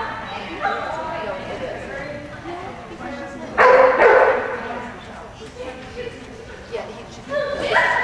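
A dog barking twice in quick succession about three and a half seconds in, with people's voices around it.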